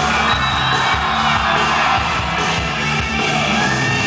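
Live rock band playing a loud instrumental stretch of a song between sung lines, with bass notes and sustained higher notes.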